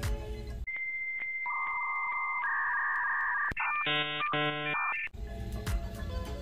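Background music cuts out and a series of steady electronic beep tones plays, stepping from a high tone to lower and middle pitches, then a short buzzy electronic chord. The music comes back about five seconds in.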